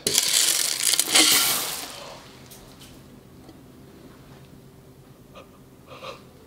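Hard, dried-out old raisins pouring out of a large tin can onto a stone countertop: a loud, dry rattling rush for about two seconds that trails off into a few scattered small clicks.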